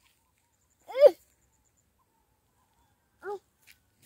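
Two short, high-pitched calls about two seconds apart, the first loud with a quick rise and fall in pitch, the second fainter and lower.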